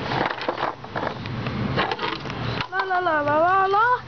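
Handling noise and light knocks of plastic toys and a skateboard for the first two and a half seconds, then a child's voice making one long, wavering wordless vocal sound until the end.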